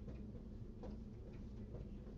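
Dry-erase marker writing on a whiteboard: a few faint, short ticks and scratches over a low room hum.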